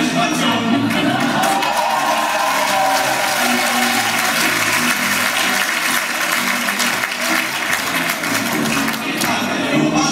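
Audience applauding and cheering in a large hall, a dense clatter of clapping, with a men's a cappella group's voices still heard underneath.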